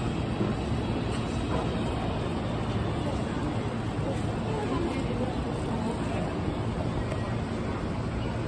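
Station platform ambience beside a standing electric limited express train: a steady low hum, with the bustle of passengers moving along the platform.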